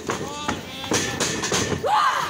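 Shouting voices of spectators around a wrestling ring, broken by a few sharp thuds from wrestlers moving and landing on the ring.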